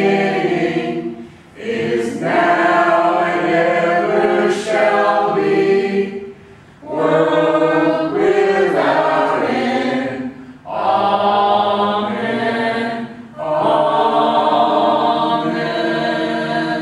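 Voices singing together in long held phrases, each a few seconds long with short breaks between them.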